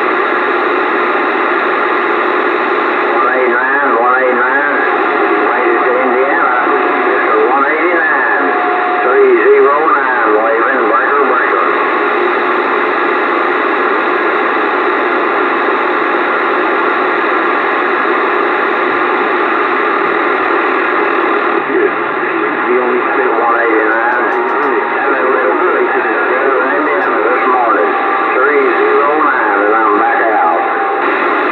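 Static hiss from a Bearcat CB radio tuned to channel 28 in AM mode. Faint, unintelligible voices come through in the first third and again near the end.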